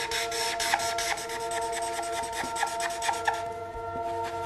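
A felt-tip marker being scrubbed quickly back and forth on paper to fill in a coloured area, in rapid scratchy strokes that stop shortly before the end. Soft sustained background music plays underneath.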